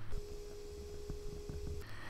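A quiet, steady electronic tone of two close pitches, like a telephone line tone, starting just after the start and cutting off cleanly shortly before the end, with a few faint ticks under it.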